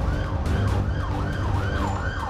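Ambulance siren in fast yelp mode, its pitch sweeping up and down about three times a second over a low steady rumble.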